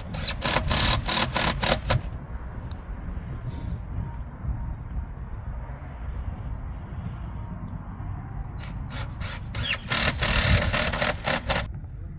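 Hands working at a plastic outdoor electrical box: bursts of rapid scraping and clicking, first with a short laugh at the start, then again for a few seconds near the end, over a steady low rumble.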